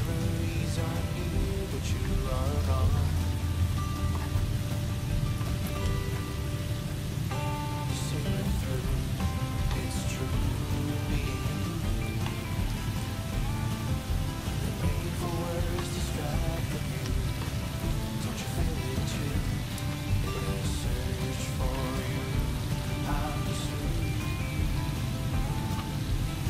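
Hot oil sizzling steadily as breaded sweet potato balls deep-fry in a pan, under background music with a light melody.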